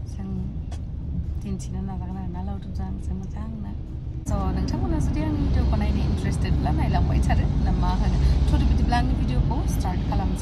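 Steady low road and engine rumble inside a moving van's cabin, under a woman talking. The rumble gets suddenly louder about four seconds in.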